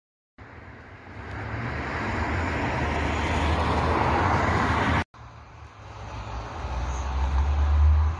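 Outdoor road-traffic noise: a rushing sound with a deep rumble that swells steadily louder, breaks off sharply about five seconds in, and builds again.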